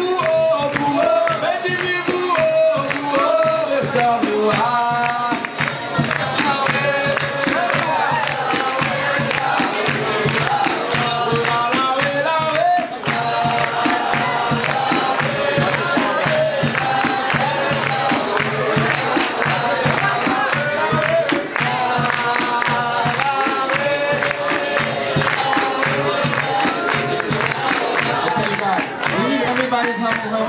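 Live capoeira music: an atabaque hand drum and berimbaus keeping a steady rhythm, with hand-clapping and a group of voices singing.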